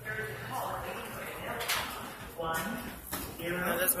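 Speech: a person's voice talking in short stretches, indistinct.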